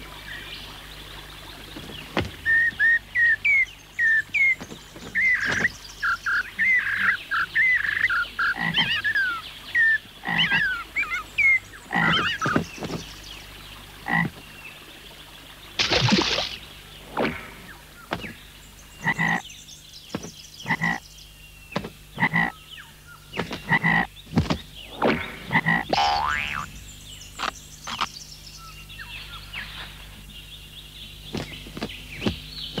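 Cartoon frog sound effects: frog croaks and quick chirping calls for the first ten seconds or so, then short croaks about once a second with sharp clicks between them. A loud noisy burst comes about halfway through.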